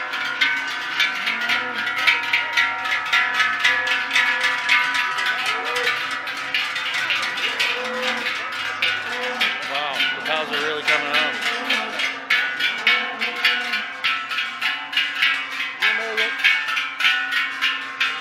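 Large cowbells hung on the necks of parading cows clanging and ringing continuously as the herd walks past, a dense, overlapping jangle of many bells.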